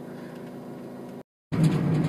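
Inside a car: a steady low hum of engine and road noise. It cuts out completely for a moment just past a second in, then comes back louder.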